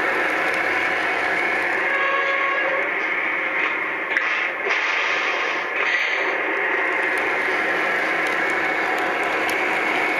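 Lionel O-gauge GE hybrid diesel locomotive model running on three-rail track, a steady loud whirring rush of its motors and wheels rolling on the rails. The sound dips briefly in the middle, then comes back to the same steady level.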